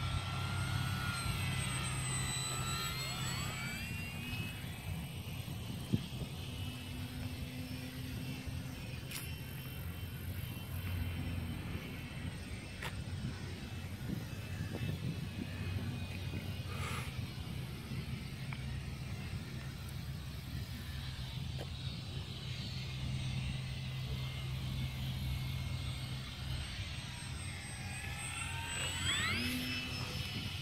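Electric motor and propeller of a radio-controlled P-51 Mustang model whining overhead. The whine falls in pitch in the first few seconds as the plane flies away, stays faint over a steady low rumble, then rises and falls again near the end as the plane passes low and close.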